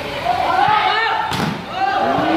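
A volleyball struck hard by a player, one sharp smack a little past halfway, over a crowd of spectators shouting and calling out in a large covered hall.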